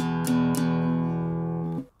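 Small Taylor acoustic guitar strumming an E power chord: three quick strums about a quarter second apart, then the chord left ringing for over a second before it is muted shortly before the end.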